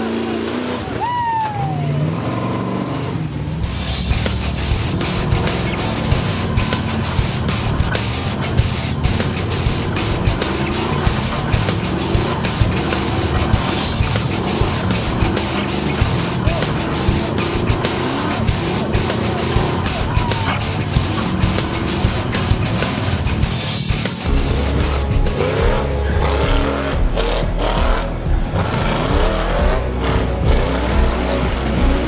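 Background music with a steady beat, mixed over off-road rock buggy engines revving on a hill climb.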